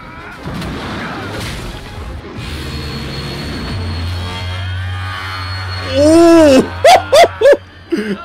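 Animated fight-scene soundtrack: music with crashing impacts, then near the end a run of loud, short, voice-like cries that rise and fall in pitch.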